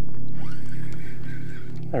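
Boat motor running with a steady low hum.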